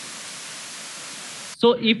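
Steady, even hiss of microphone and recording noise, with a man's voice starting to speak near the end.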